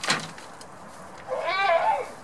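A goat bleating once near the end, a long wavering call, after a short sharp sound right at the start.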